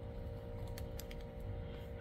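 Light crackling and clicking of a cigar's cellophane sleeve handled in the fingers, over a faint steady hum.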